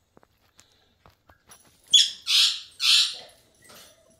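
A puppy whimpering: three short, high-pitched cries a couple of seconds in, then a fainter one near the end.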